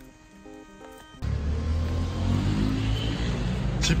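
Faint background music, then about a second in a loud, steady low engine rumble cuts in: a motor vehicle running close by.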